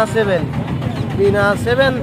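Men talking over a steady low background rumble.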